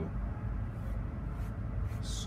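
Steady low background hum with an even haze of noise, without any distinct strokes or knocks.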